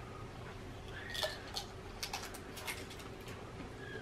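Faint crunching of Pringles potato crisps being chewed, a scatter of irregular crisp crackles.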